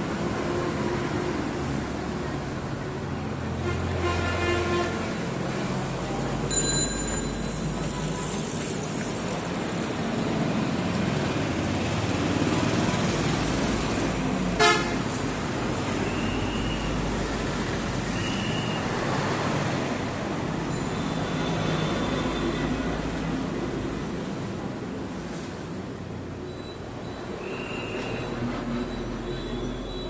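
Steady rumble of road traffic, with vehicle horns tooting several times: a longer horn blast about four seconds in and short high beeps later on. There is a single sharp click about halfway through.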